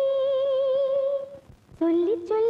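Female vocal in a Tamil film song holding one long hummed note with light vibrato that fades out about a second and a half in; after a brief gap a new sung phrase starts low and steps upward near the end.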